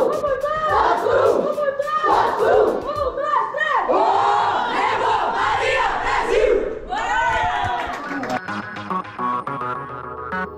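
A football team shouting a rallying chant together in a huddle, many voices loud at once. About eight seconds in the chant stops and electronic music comes in.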